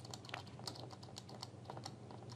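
A quick, irregular run of faint clicks from computer keys, tapped in quick succession.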